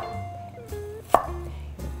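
A chef's knife slicing an onion thinly on a wooden cutting board, the blade knocking on the board at the start and again about a second in, with background music underneath.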